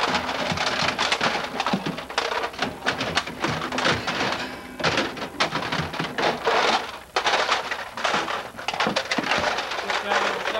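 Rummaging through a refrigerator: items clattering on the wire shelves and packaging rustling, a dense, continuous run of knocks and scrapes.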